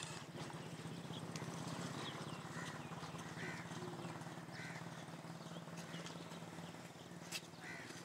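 Short animal calls repeating every second or so over a steady low hum.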